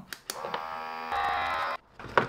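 Small EIBOS USB vacuum pump running on the valve of a vacuum seal bag, drawing the air out around a filament spool. A steady electric hum that gets louder about a second in and cuts off suddenly near the end.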